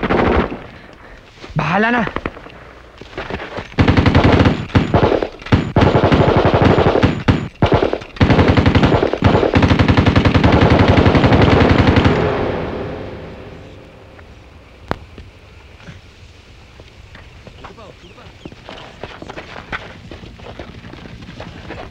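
Automatic gunfire: long bursts of rapid shots with short breaks, starting about four seconds in and fading out a few seconds past the middle. A brief shout comes just before it.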